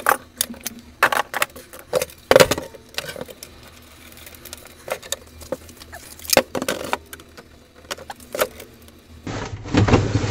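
Irregular clicks, knocks and rattles of a Sharp boombox's plastic cabinet being handled and its halves fitted back together, the loudest knock about two and a half seconds in.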